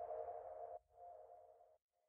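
The fading tail of an electronic logo jingle: a faint, soft tone dying away, with a brief fainter echo of it about a second in.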